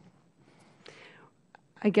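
A pause between speakers: quiet room tone with a faint breathy sound about a second in, then a woman starts speaking near the end.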